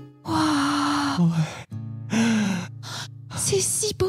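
A performer's breathy gasps and drawn-out sighs of wonder: one long 'aah', then shorter ones, the last rising then falling. Under them, background music holds low notes.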